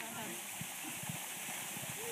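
Steady rush of a waterfall, with faint voices of people in the background.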